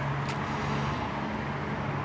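A motor running with a steady low hum that holds one pitch.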